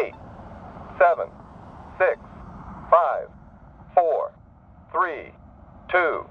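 Polara N4 accessible pedestrian push button's synthesized voice counting down the pedestrian clearance time, one number each second from eight downward, through the unit's small speaker.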